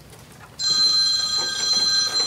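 A loud, steady high-pitched electronic ringing tone, several pitches sounding at once, that starts suddenly about half a second in and holds.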